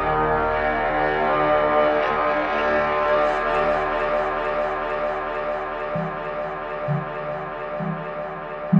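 Electronic dub music: a sustained, layered synth drone that slowly fades, with short low bass notes coming in about once a second over the last two seconds.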